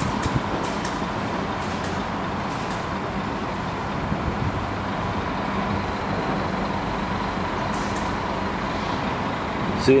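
Steady urban background noise: an even, continuous rumble with a faint steady hum and no distinct events.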